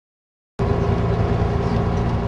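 Sound cuts in suddenly about half a second in: a steady low engine and road rumble, as heard from inside a moving vehicle such as a tour bus.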